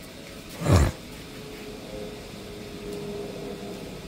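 A brief muffled thump under a second in, then a faint steady hum of one even pitch under the outdoor background.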